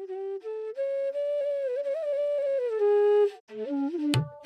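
Opening theme music: a solo flute-like melody playing a simple tune, stepping up and then down to a long held note that cuts off about three seconds in, followed by a few short lower notes.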